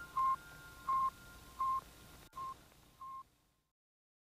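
Five short electronic beeps at one pitch, evenly spaced about one every 0.7 seconds, each quieter than the last, part of an ambient electronic score; the sound fades to silence about three and a half seconds in.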